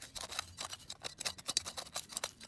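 Garden hand trowel digging into dry, grassy soil: a quick, irregular run of crisp scrapes and crunches as the blade cuts in and lifts the earth.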